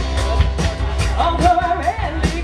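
Live rock band playing: a lead vocal, with one note held through the second half, over guitars, bass and drums.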